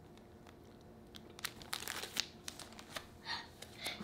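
Plastic comic book bags crinkling and rustling as bagged comics are handled, in short irregular crackles starting about a second in.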